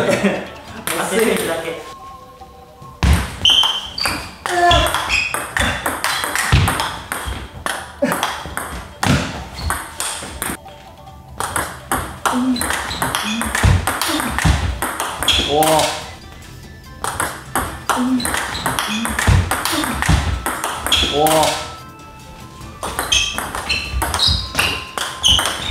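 Table tennis rally: the ball clicking quickly and repeatedly off the paddles and bouncing on the table, one side blocking with short-pips rubber. The rallies break off with brief pauses a few times.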